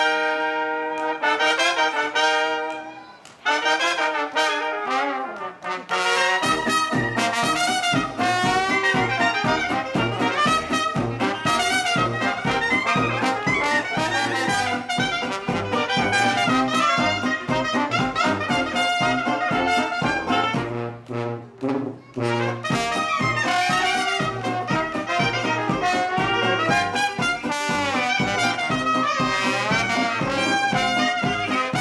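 A traditional New Orleans jazz band plays: cornet, clarinet, trombone, sousaphone, banjo and guitar. The horns hold a chord for about three seconds and play a short falling phrase. The full band, with a steady sousaphone and banjo beat, comes in about six seconds in, and drops out briefly about twenty-one seconds in.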